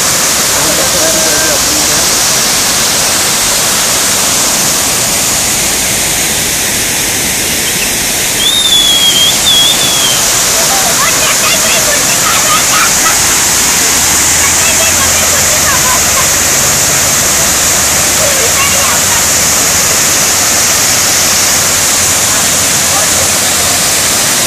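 Muddy floodwater pouring over a stepped concrete weir: a loud, steady rush of falling water.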